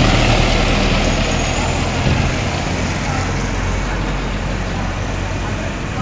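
A truck passing close by on the road, its engine running low and steady and slowly fading as it moves away.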